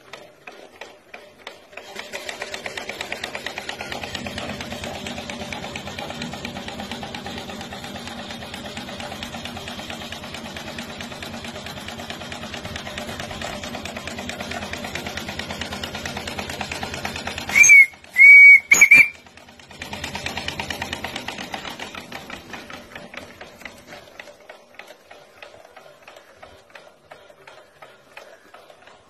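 Small coal-fired steam engine of a steam bicycle running free on its stand: faint ticking that picks up about two seconds in to a rapid, even beat, then eases back to a light ticking near the end. About two-thirds of the way through, its whistle gives three short, loud toots.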